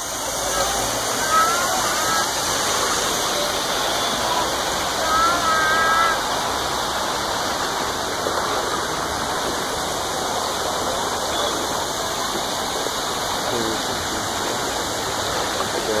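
Steady rush of running water at a swimming pool, with short high chirps over it in the first six seconds.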